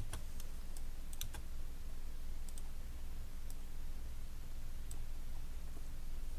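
Scattered computer mouse clicks, about ten in all, several close together in the first second and a half and a few more spread out after, over a steady low hum.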